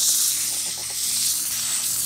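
180-grit sandpaper rubbing on the spinning shaft of a 1955–56 Fedders air-conditioner fan motor: a steady high hiss over a faint low motor hum, as surface rust is polished off the spindle under light pressure.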